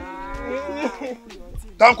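A single long moo-like call of about a second, held level and then wavering and falling at its end.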